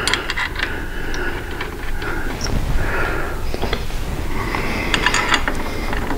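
Light metallic clicks and scrapes of a motorcycle handlebar clamp being set over the bars and its bolts turned in by hand, with clusters of clicks near the start and again about five seconds in.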